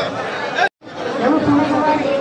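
Indistinct chatter of several people talking, broken by a sudden short cut to silence under a second in.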